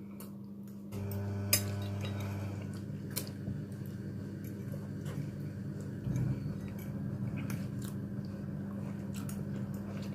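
Metal forks clinking and scraping on plates during a meal, scattered sharp clicks, with chewing in between. A steady low hum runs underneath.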